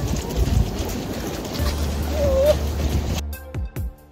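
Outdoor noise from walking along a race course, with a low steady rumble on the phone's microphone. About three seconds in, the sound cuts abruptly to background music.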